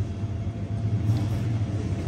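Steady low background rumble with a faint hum, no singing.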